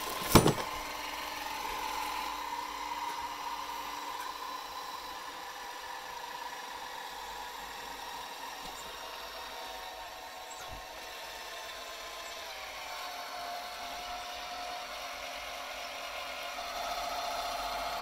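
A 12-volt electric hydraulic car jack's motor and pump whining steadily as it lifts a Hummer H2 under load, the jack lifting until a wheel is clear of the ground. A short click comes just at the start, and the whine slides a little lower in pitch about two-thirds of the way through.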